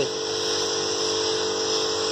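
Button-started knapsack sprayer's electric pump running with a steady whine, with the hiss of spray mist from the lance nozzle.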